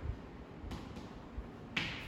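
Chalk writing on a chalkboard: a couple of short, sharp strokes of the chalk against the board, one near the middle and one near the end.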